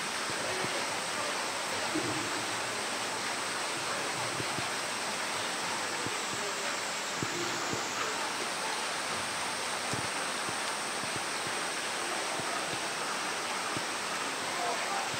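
Heavy rain falling in a steady, even hiss.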